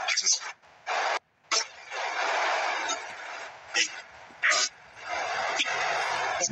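Radio static hiss that cuts in and out abruptly, with short louder blips, like a spirit box sweeping through stations.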